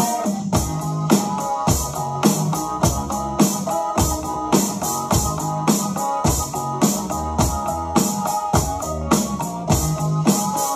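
Electronic drum kit played along to a Eurobeat backing track. A synth keyboard melody runs over a steady, fast, evenly spaced beat.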